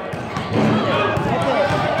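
A basketball bouncing on a wooden gym floor amid the mixed voices of players and spectators.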